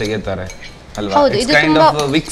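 A metal spoon scraping and clinking against a glass bowl as a white ingredient is spooned into a mixer jar, with people talking over it.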